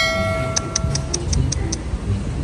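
A high voice's held note fading out, overlapped by a quick, even run of about eight light, high-pitched ticks.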